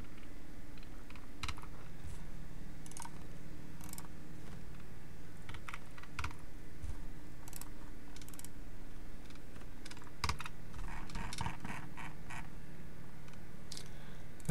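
Irregular, scattered clicks and taps of a computer keyboard and mouse as parts are selected and deleted, over a faint steady low hum.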